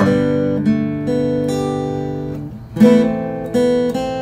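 Acoustic guitar playing a fingerpicked chord pattern: single notes ring over the chord, with new notes sounding about every half second, some of them hammered on. A louder strummed chord comes a little under three seconds in.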